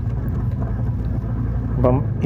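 Motorcycle engine running steadily with a low drone while the bike is ridden along a dirt road; a man's voice starts near the end.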